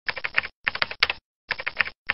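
Computer keyboard typing sound effect: quick runs of key clicks in several short bursts separated by brief pauses.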